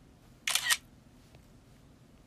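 A short, sharp double click with a hiss of noise, about a third of a second long, half a second in.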